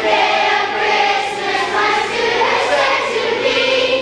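A group of voices singing a song together, choir-like, steady and loud throughout.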